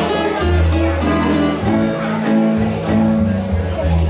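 Croatian tamburica ensemble playing a Bačka folk tune live: small tamburas carry the melody over strummed larger tamburas and a plucked tambura bass (berde) that holds low notes.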